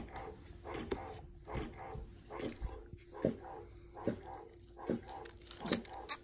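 Electric breast pump running: a steady motor hum with a rhythmic suction sound repeating a little under once a second.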